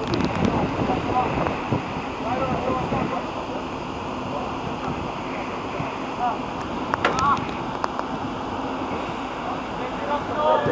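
Football players calling and shouting to each other across the pitch in short bursts, over a steady rush of wind and outdoor noise. There is a sharp knock about seven seconds in.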